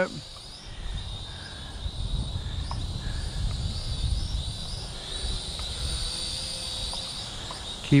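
ScharkSpark Wasp SS40 toy quadcopter's small motors whining high and thin, the pitch wavering as the drone is steered, with wind rumbling on the microphone.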